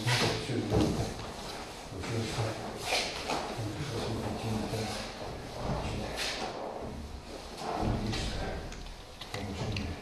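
A few clunks and knocks, with faint, broken voices underneath.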